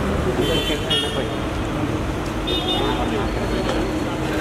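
Busy street traffic with several short car horn toots over the voices of a crowd.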